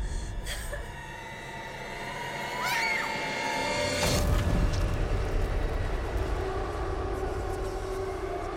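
Horror film score: a low rumbling drone with sustained eerie tones. A brief high glide rises and falls near three seconds in, and a sudden hit lands about four seconds in.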